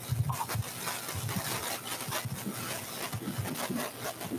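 Audience noise in a large hall: a dense patter of small clicks over a low murmur of voices.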